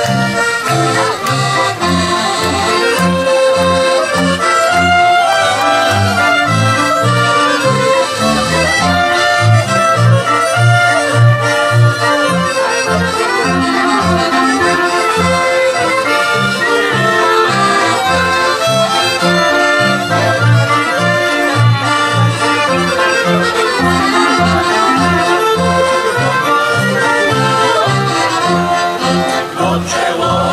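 Polish folk band playing an instrumental tune: an accordion leads with fiddles over a double bass marking a steady, even beat.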